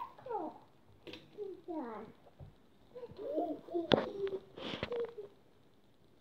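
A toddler babbling and making short wordless vocal sounds that slide up and down in pitch, with a sharp knock about four seconds in.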